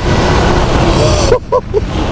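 Heavy wind noise buffeting the microphone, which cuts off abruptly about two-thirds of the way in. A couple of short voice sounds follow.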